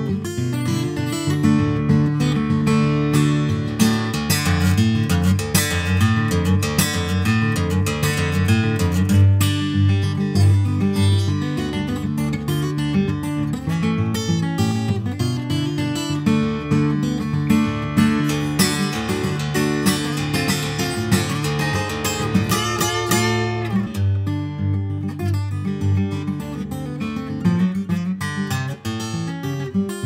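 Solo acoustic blues guitar playing an instrumental break, with picked treble notes over a steady bass line. There is a run of bent notes about three-quarters of the way through.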